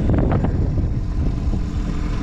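Small outboard motor on an inflatable dinghy running steadily, with wind rumbling on the microphone and a few light knocks early on.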